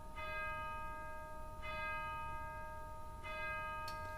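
A bell struck three times, about a second and a half apart, each strike ringing on in a cluster of steady tones.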